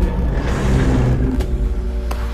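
Sound effect of a huge machine descending in an animation: a deep rumble with a rushing noise that swells and fades within about a second and a half, over held music notes.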